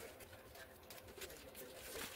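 Faint, scattered clicks and light rustles of hands handling a foam RC model plane's parts, over a faint steady hum.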